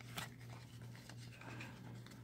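Faint rubbing and light ticks of a stack of baseball cards being handled and squared up between the fingers, over a low steady hum.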